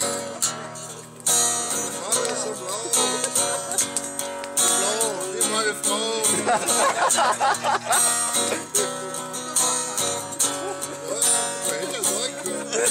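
Acoustic guitar being strummed in a live, unamplified performance, with voices singing along.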